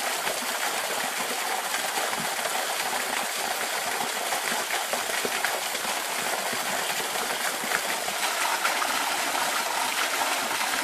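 Thin stream of a waterfall splashing steadily into the rock pool below, a light, even rush of water. The falls are running with very little water.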